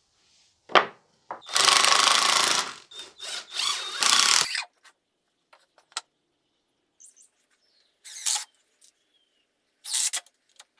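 A power drill at work on pocket-hole joints in pine framing: one run of about a second and a half, then two shorter bursts. A sharp knock of wood comes just before, and scattered small clicks and another knock of handled timber follow.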